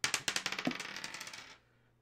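A die thrown onto a wooden tabletop, clattering as it tumbles in a quick run of clicks that fade out over about a second and a half as it comes to rest.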